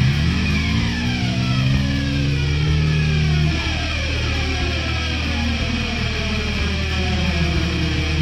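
Heavy metal music: distorted electric guitars with notes sliding downward in pitch over a steady low bass. A held low note breaks off about three and a half seconds in.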